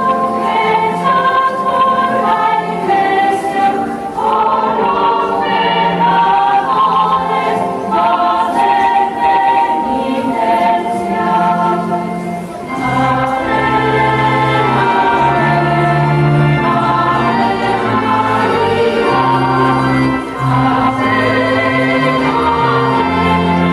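A choir singing a sacred hymn in held notes. About halfway through, deeper bass notes join beneath the voices.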